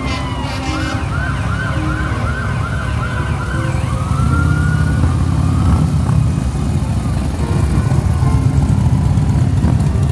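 A siren sweeping quickly up and down, a little over two cycles a second, then one slower rise and fall that fades out, over a heavy vehicle engine rumble that grows louder about four seconds in.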